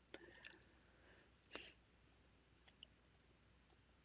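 Near silence broken by a handful of faint, irregularly spaced clicks from a computer mouse.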